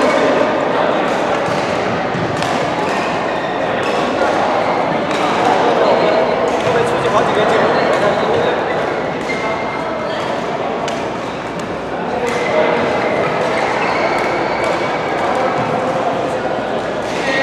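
Indistinct chatter of many people echoing in a large sports hall, with frequent sharp clicks of badminton rackets striking shuttlecocks scattered throughout.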